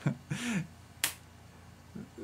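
A short voiced chuckle from a smiling man, its pitch rising then falling, between two sharp clicks about a second apart.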